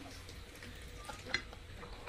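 Quiet close-miked eating sounds: soft mouth noises and light clicks of chopsticks against dishes, with one sharper click about a second and a half in.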